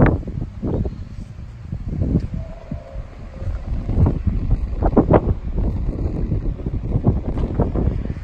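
Wind buffeting the microphone: a gusty low rumble that swells and fades, with a few brief knocks from the camera being handled.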